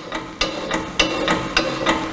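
Hydraulic hand pump on a DTP04 drum depalletiser being worked by its handle to raise the drum grip: a steady run of clicks and knocks with a short ring after each, about three a second.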